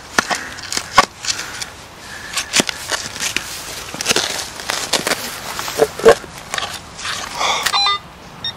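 Steel spade driven into stony soil by foot and levered, with scraping and a series of sharp, irregular knocks and clinks as the blade meets buried debris.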